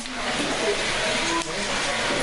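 A large fire burning inside a building, giving a steady, noisy roar, with men's voices faint underneath.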